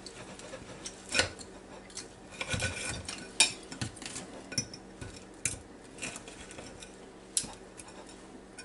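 A table knife and fork clinking and scraping against a china plate while cutting a flour-breaded air-fried pork chop. The sound comes as scattered short, sharp clicks and scrapes.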